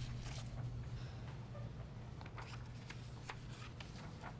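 Quiet meeting-room tone: a low steady hum, with scattered faint clicks and rustles that come more often in the second half.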